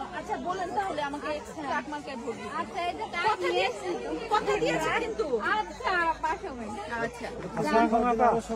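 Several people talking at once: overlapping chatter of a small group of voices.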